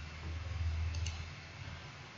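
Computer mouse clicked twice in quick succession about a second in, over a low hum that fades after about a second and a half.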